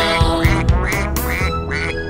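Children's song music with a run of short, quack-like calls, about five at roughly two a second, over the backing track.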